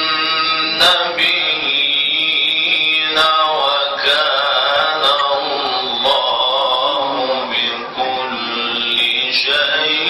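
A man reciting the Quran in the melodic, chanted tajweed style, one voice drawing out long held notes with slow ornamented turns of pitch.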